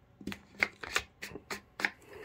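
Plastic screw cap on a bottle of Hoppe's No. 9 solvent being twisted by hand, giving about eight short, sharp, irregular clicks as it turns.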